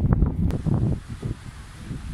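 Wind buffeting the camera microphone: a gusty low rumble that rises and falls, with one sharp click about half a second in.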